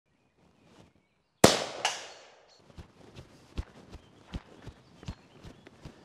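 Traditions Mini Ironsides miniature black-powder cannon firing off its fuse about a second and a half in: one sharp, loud report with a second, fainter crack about half a second after it. Then light footsteps in grass, a step every few tenths of a second.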